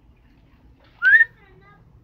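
A person whistles once, a short, loud, rising whistle about a second in, calling a dog back.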